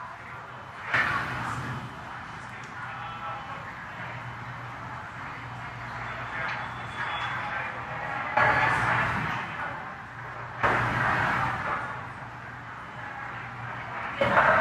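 Open radio communications loop: a steady hiss over a low hum, with three sudden louder bursts of static, about a second in and twice in the second half, as the channel is keyed.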